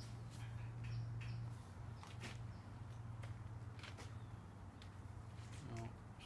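Quiet background: a steady low hum with a few faint, scattered ticks.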